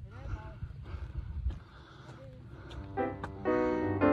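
Low rumble of wind on the microphone out in open fields, then piano background music comes in about three seconds in and is the loudest part.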